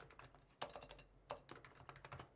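Faint keystrokes on a computer keyboard: a few separate key clicks as a word is typed.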